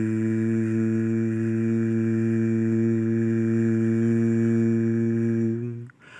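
A man's voice holding one long, low hummed note, steady in pitch for more than five seconds, which breaks off near the end.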